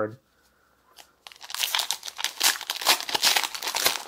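Foil booster-pack wrapper of a Pokémon trading card pack being torn open by hand: a dense run of crinkling and tearing crackles that starts about a second in, after a near-silent moment.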